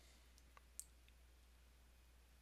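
Near silence: faint room tone with a low hum and a few soft clicks, the clearest a little under a second in.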